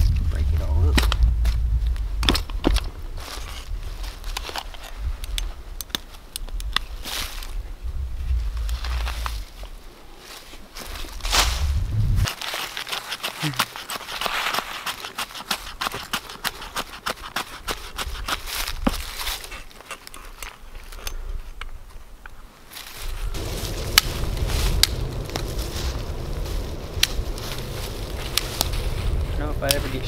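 Clicks, scrapes and rustles of outdoor work in dry leaves and soil: a folding shovel scraping and digging dirt, then a knife shaving wood, then dry sticks being gathered and snapped. A low wind rumble on the microphone runs under the first part and returns for the last several seconds.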